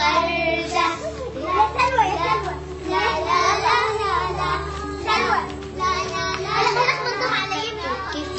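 A group of children singing together, with children's speaking voices mixed in.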